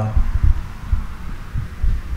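Low, irregular thumping rumble of handling noise on a handheld camera's microphone.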